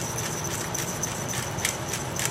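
Cabbage frying in a stainless steel pot, a steady sizzling hiss, with a few faint clicks.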